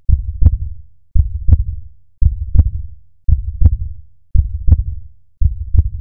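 A heartbeat: a steady lub-dub double thump repeating about once a second, six beats in all.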